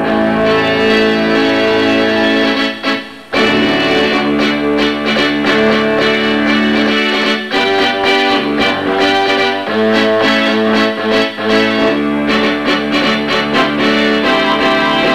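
Ensoniq SQ-2 synthesizer playing its brass patch, layered with a saxophone sound, in held chords and phrases, with a short break about three seconds in. Keys struck hard make the pitch waver with a bend that simulates an overblown brass instrument.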